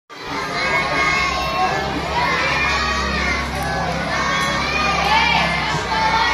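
A crowd of schoolchildren shouting and cheering together, many high voices overlapping at a steady level.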